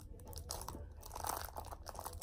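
Scissors cutting through the wrapping of a small box, a few faint crunching snips.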